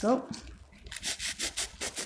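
A knife sawing through the crust of a baked bread roll, quick back-and-forth scraping strokes at about five a second, starting about a second in.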